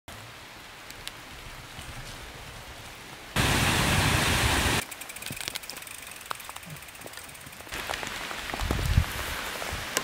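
Rain falling and dripping in woodland, a steady hiss with scattered drips. About three seconds in, a much louder rushing noise starts and cuts off abruptly a second and a half later, and the hiss grows louder near the end.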